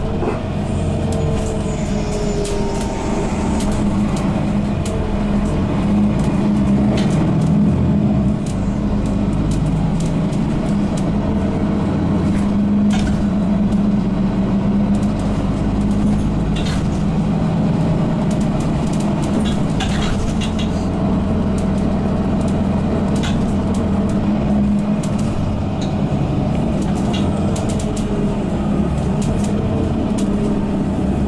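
Interior running noise of a 2012 Mercedes-Benz Citaro Facelift G articulated bus with Voith automatic gearbox, heard from a passenger seat: a steady engine hum and road rumble while driving, with scattered light rattles and clicks.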